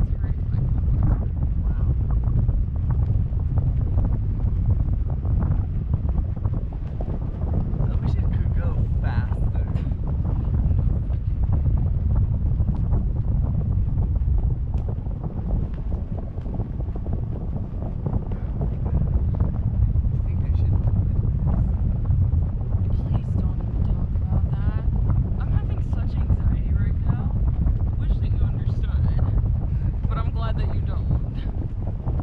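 Wind buffeting the microphone of a camera up on a parasail, a steady low rumble, with faint voices now and then.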